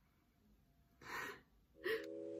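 A person's short breathy gasp about a second in, and another brief breath right at the end.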